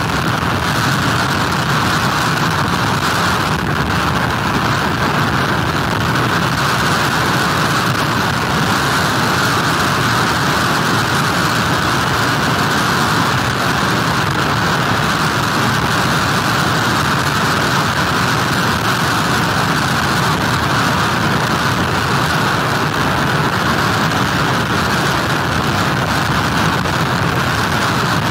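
Hurricane storm noise of wind, driving rain and heavy surf picked up by an outdoor webcam's microphone. It is a steady, unbroken rush.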